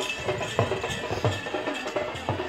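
Drums beating a steady rhythm of about three strokes a second, each stroke dropping quickly in pitch.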